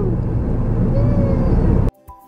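Road and engine noise inside a moving car's cabin, a steady low rumble, which cuts off suddenly near the end.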